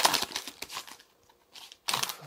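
Foil wrapper of a Pokémon trading card booster pack crinkling as it is handled, with a short, sharp crinkle near the end.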